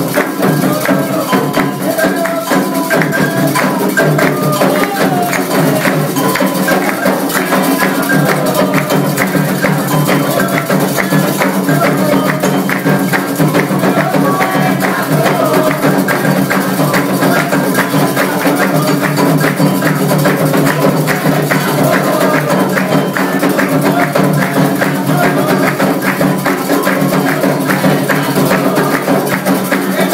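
Candomblé ritual drumming for Ogum's dance: atabaque hand drums and a struck bell play a dense, steady rhythm, with voices singing over it.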